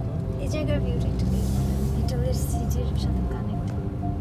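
A car driving, its engine and road noise a steady low rumble heard from inside the cabin, easing off shortly before the end, with background music and faint voice over it.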